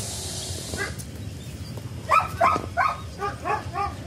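A beagle giving a quick series of short, high yips, about eight in under two seconds, starting about halfway through, after a single yip near the start.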